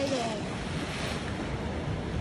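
Ocean surf washing on the reef and shore, a steady rush of noise, with wind buffeting the microphone.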